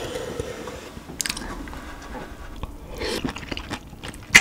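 Close-miked biting and chewing of a whole webfoot octopus: a bite at the start, then steady wet chewing full of small clicking mouth sounds, with louder moist bursts about a second in and near the end.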